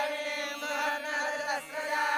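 A group of voices chanting Hindu puja mantras in unison, on long held notes with short breaks between phrases.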